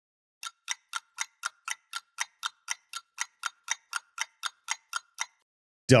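Clock-style ticking sound effect, about four even ticks a second, that starts about half a second in and stops about a second before the end, marking a wait while software processes.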